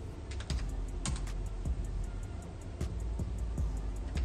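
Typing on a keyboard: a run of irregular key clicks, over faint background music.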